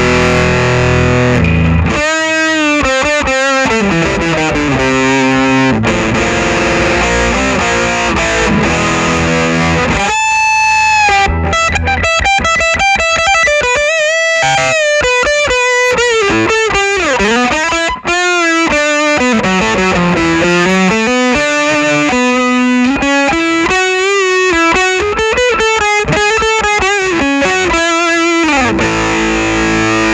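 Distorted electric guitar, a Gibson Les Paul Tribute played through a Fulltone PlimSoul overdrive/distortion pedal, with the sustain turned fully up and the second-stage hard clipping blended in to about halfway. Chords at the start and end, and between them bluesy lead lines with string bends, including a long held note with vibrato about ten seconds in.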